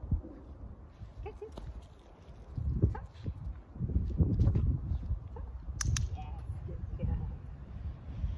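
A puppy making small vocal sounds while it tugs a toy held in a hand, over a low rumble of wind on the microphone, with two sharp clicks in quick succession about six seconds in.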